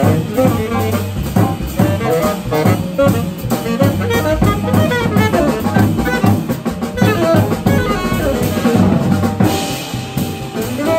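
Live small-group jazz: a tenor saxophone solos over upright bass and a drum kit played busily throughout.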